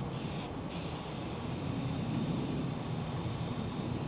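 Aerosol spray paint can hissing in short bursts near the start as paint is sprayed onto a freight car, over a steady low rumble.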